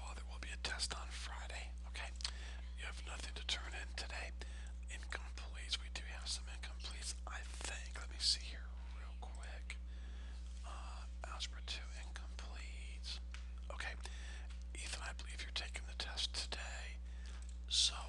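Scattered soft clicks and short rustles from a computer mouse and pen tool being worked at a desk, over a steady low electrical hum.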